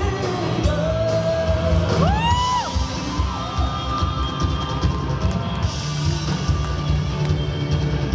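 Live rock band playing amplified electric guitars and drum kit, with singing. A high note slides up and is held briefly about two seconds in.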